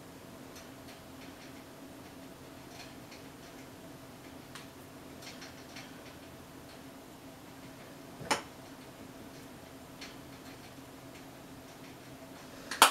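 Faint, irregular small clicks and taps from makeup being handled, with one sharper click about eight seconds in, over a low steady hum.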